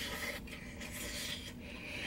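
A person biting into and chewing a burger close to the microphone: quiet rubbing, rasping mouth and bun noises.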